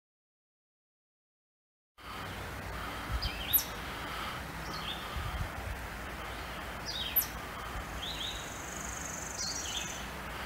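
After about two seconds of silence, woodland birdsong: a worm-eating warbler's dry, fast trill, heard as one steady high buzz for the last two seconds, over short repeated phrases of a red-eyed vireo and a few sharp single chipmunk chips.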